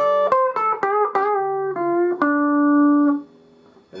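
Clean electric guitar, a Telecaster-style solid body, picking a quick single-note electric blues lick high on the neck around the 10th fret: about ten notes in a row, the last one held for about a second before it dies away shortly before the end.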